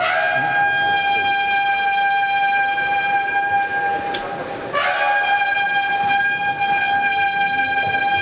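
A trumpet call of long, steady held notes, with a brief break and a fresh note just under five seconds in.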